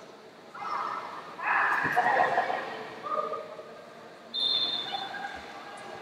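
Voices shouting around a grappling mat, loudest about one and a half seconds in. A short, steady, high tone sounds a little past four seconds.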